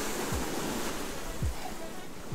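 Surf breaking and washing over the jetty rocks: a steady rush of water, with a few short low thumps on the microphone.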